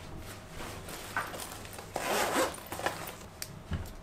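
A bag zipper being pulled open, then rustling as a hand rummages inside the bag, with a few small clicks near the end.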